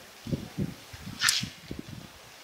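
Irregular low thumps and rumbles on a handheld camera's microphone, several a second, with one short hiss a little past a second in.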